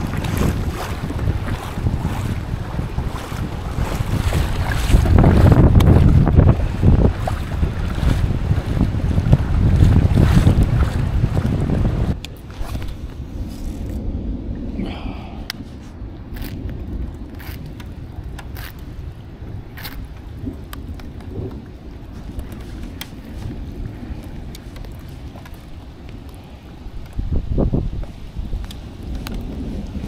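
Wind buffeting the microphone over choppy water rushing and splashing along a moving kayak's hull. About twelve seconds in the noise drops suddenly to a quieter, duller rush, with scattered sharp ticks.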